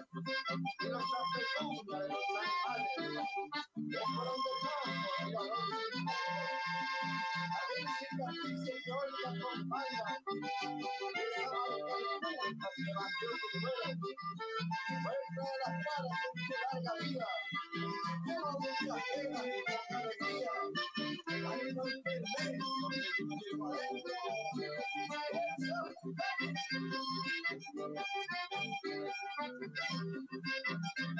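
Button accordion and acoustic guitar playing a rhythmic folk tune together, with steady pulsing bass notes under the accordion melody.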